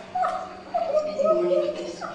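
A high, drawn-out whimpering voice from a TV bedroom scene played over loudspeakers, in a few gliding phrases, the longest near the end.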